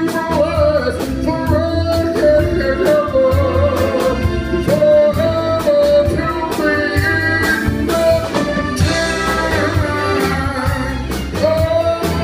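Male vocal group singing in close harmony with live band accompaniment: bass and a steady drum beat under the voices.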